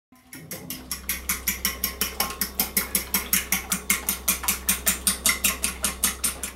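A fork beating egg in a bowl, clicking against the bowl in a fast, even rhythm of about six strokes a second.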